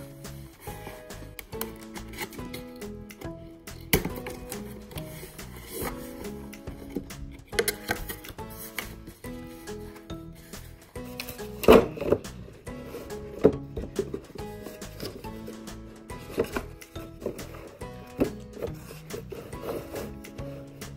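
Background music, with knocks, clicks and scrapes from cardboard nesting blocks being slid out of their box and handled; the loudest knock comes about twelve seconds in.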